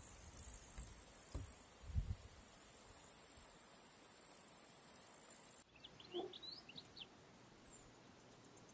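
Meadow insects shrilling in a steady high-pitched chorus, with a few low thumps in the first couple of seconds. Past the halfway point the chorus cuts off suddenly, leaving quieter outdoor sound with a few short bird chirps.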